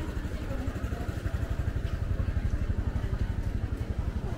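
A small motorcycle engine running close by: a fast, even low pulsing that grows louder about halfway through and eases a little near the end.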